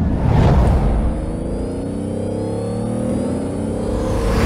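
Intro-style logo sting: a whoosh, then a car engine rev sound effect slowly rising in pitch over a low rumbling music bed.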